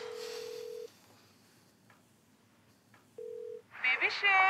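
Telephone ringback tone as an outgoing call rings through: a steady single-pitch beep about a second long, then after a gap of about two seconds a second, shorter beep near the end.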